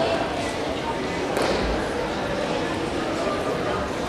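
Indistinct murmur of many people talking, echoing in a large sports hall, with one sharp click about a second and a half in.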